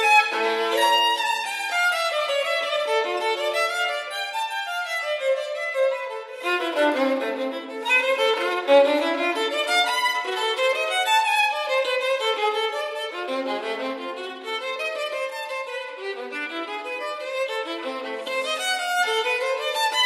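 Unaccompanied solo violin playing a fugue, its notes running on without a break and at times sounding two at once.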